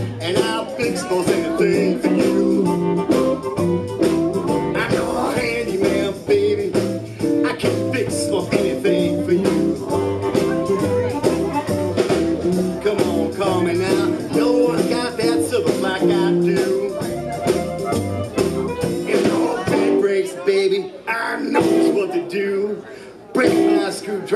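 Live blues band playing an instrumental passage: upright bass, drums and electric guitar, with an amplified harmonica carrying the lead.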